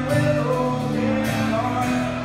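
A man singing with a strummed acoustic guitar in a live performance.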